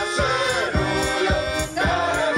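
Polish soldiers' song performed by a mixed group of voices singing together, with accordion, clarinet and double bass. A steady bass pulse comes about three times a second.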